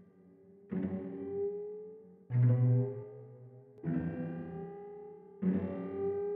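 Synth strings from Xpand!2 played through Saike's Reflectosaurus modular delay plugin on a strange, pitch-warping preset: four notes about a second and a half apart, each ringing on with echoes that slide upward in pitch.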